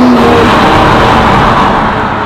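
BMW M340i's B58 turbocharged straight-six running through a Fi valvetronic cat-back exhaust with the valves open, loud as the car drives past. The engine note begins to fade near the end as the car moves away.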